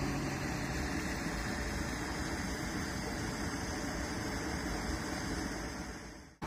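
Steady rush of river water pouring over a small weir and down a mill race: an even, pitchless noise that fades down near the end.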